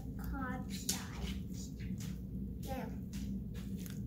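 A child biting and chewing corn on the cob: short, irregular crunching clicks as kernels are bitten off, with a brief voice fragment in the first half second.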